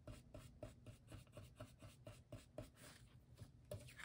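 Faint, quick strokes of an ink blending brush on cardstock, brushing along the edge of a paper towel mask at about four strokes a second. One louder rustle comes near the end.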